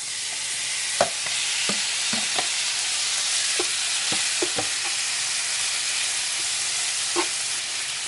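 Ground meat sizzling in hot oil in a frying pan with onions, garlic and ginger, the sizzle swelling as the meat goes in. A spatula stirs it, knocking and scraping on the pan a few times.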